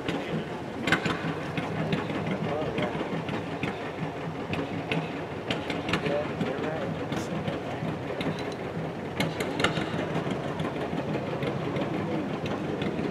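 A tractor engine idling steadily, with a few sharp clicks and faint voices in the background.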